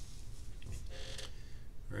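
Steady low hum with faint scratches and taps from a pencil and plastic ruler being handled on paper.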